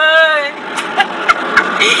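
A woman's voice holding a sung note, then the steady noise of a car's cabin with several sharp clicks, and the start of her laugh near the end.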